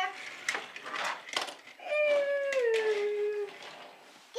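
A few light clicks of small die-cast toy cars being set down on a wooden floor, then a young child's long drawn-out vocal sound that slides slowly down in pitch for about a second and a half.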